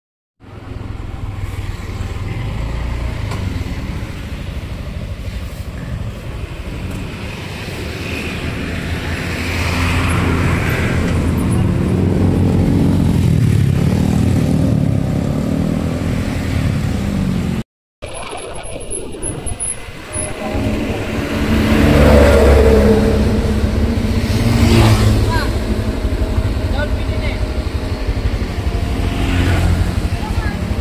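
Small motor scooter engine running while riding slowly along a road, its note rising and falling, with passing traffic.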